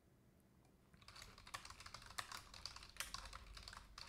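Faint typing on a computer keyboard: a rapid run of keystrokes starting about a second in.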